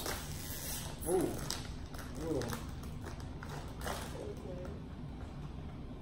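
A chip bag being handled, giving a couple of short crinkles, among brief quiet murmurs and laughs.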